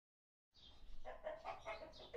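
Faint animal calls starting about half a second in: a quick run of short, repeated notes at one pitch, about five a second.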